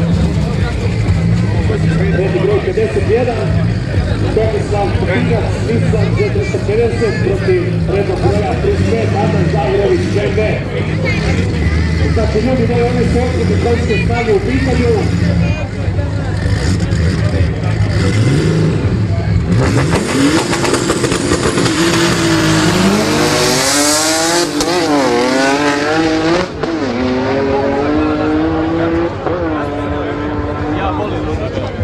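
Two drag-race cars launching from the start line about twenty seconds in. The engines rev hard, with the pitch climbing and dropping back several times through the gear changes, then the sound eases as the cars head off down the strip. Before the launch, the engines run at the line under a voice on the loudspeakers.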